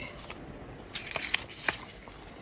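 Pages of a paper album lyric book being turned and handled, with a few small paper clicks and rustles about a second in.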